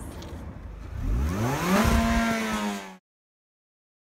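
Car engine revving up as the car pulls away: its pitch rises for under a second, then holds steady, and the sound cuts off abruptly about three seconds in.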